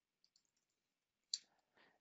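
Near silence, broken by one brief click a little past halfway.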